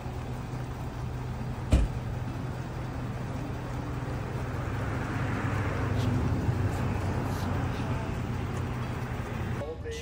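Steady low hum of an idling car, with one sharp knock about two seconds in.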